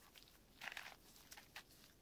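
Faint scattered clicks of an 8x8x8 Rubik's cube's layers being turned by hand.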